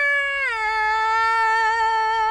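A woman's voice holding one long, high sung note. The pitch dips slightly about half a second in, then holds steady with a slight waver.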